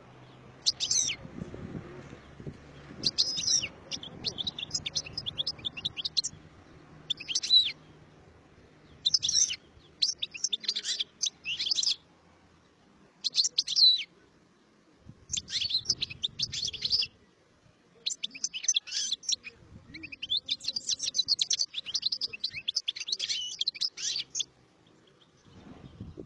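European goldfinch singing: bursts of rapid, high twittering and warbling phrases, one to a few seconds each with short pauses between them, the longest run near the end.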